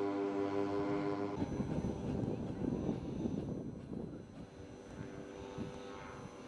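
Twin engines of a large radio-controlled Heinkel He 111 model droning steadily in flight. The drone breaks off abruptly about a second and a half in and gives way to a low, rough rumbling noise. The engine drone comes back faintly near the end.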